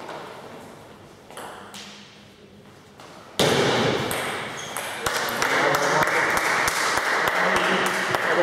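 Table tennis rally: the ball clicking off the paddles and table, a few spaced clicks at first, then a much louder stretch from about three and a half seconds in, with rapid clicks and voices over them.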